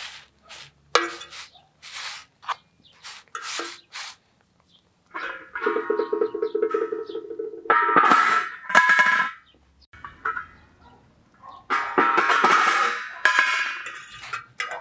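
A metal fork clicks and taps against a steel griddle pan as flatbreads are turned. Then a steel lid scrapes and clanks on the griddle, giving off ringing metallic tones, loudest near the middle and towards the end.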